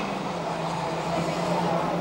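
A Ford Granada saloon's engine running at steady revs as the car is driven through a track corner, a steady engine note that dips slightly in pitch at the start.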